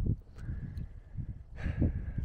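Wind buffeting a phone's microphone, an uneven low rumble, with a faint steady high tone running from about half a second in.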